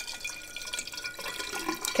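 Water poured from a plastic pitcher into a tall glass jar, a steady stream filling it.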